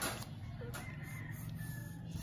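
A pencil stroke scratches across drawing paper at the start. Then comes a faint, drawn-out bird call, over a low steady hum.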